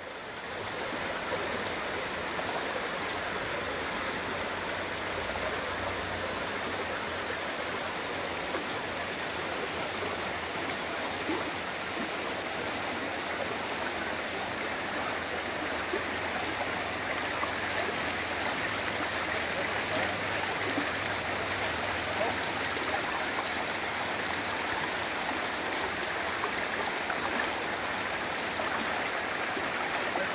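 Shallow rocky river running over stones and riffles: a steady rushing of water.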